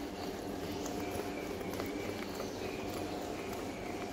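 Indoor cycling bike being pedaled, its flywheel whirring steadily with light repeated knocks from the pedal strokes.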